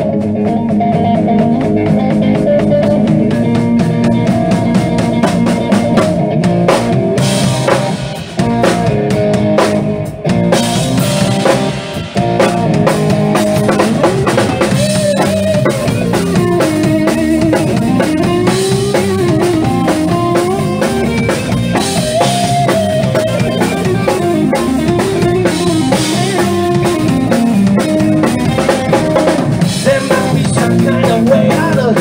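Blues-rock band playing live: a Stratocaster-style electric guitar over a drum kit. The sound drops briefly a few times about a third of the way in, and from about halfway through a lead guitar line bends and wavers in pitch.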